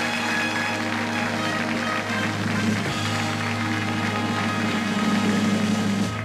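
Live studio band playing music with long held chords, marking the proclamation of the show's winner.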